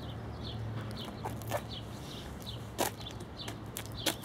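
A bird calling outdoors: a steady series of short, high chirps, about three a second, over a low background hum. A few sharp clicks cut in, the loudest about three seconds in.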